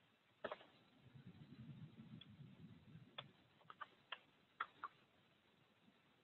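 Faint computer keyboard keystrokes: about ten short, irregularly spaced clicks, several coming close together in the middle, as a terminal command is typed and entered.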